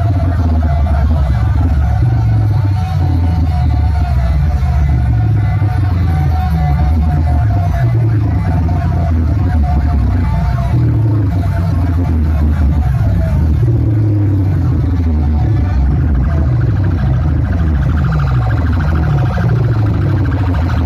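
Loud DJ remix music with heavy, pounding bass, played through a large stack of bass cabinets and horn speakers. A wavering, siren-like high line runs over it for the first dozen seconds or so.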